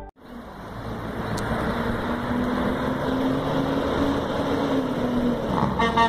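Freightliner Cascadia semi-truck's diesel engine running, growing slowly louder as the truck approaches. Its air horn starts to sound right at the end.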